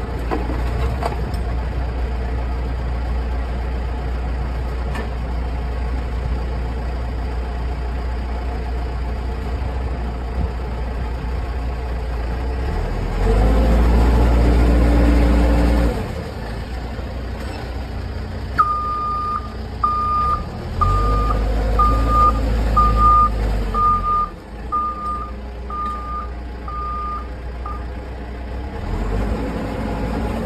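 A 2006 JLG G10-55A telehandler's diesel engine runs steadily, revving up for a few seconds about halfway through and again a little later. During the second half its reversing alarm beeps about a dozen times, a little faster than once a second, then stops.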